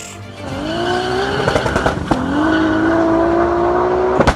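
Car engine accelerating hard, its pitch climbing steadily, dropping at a gear change about two seconds in and then climbing again.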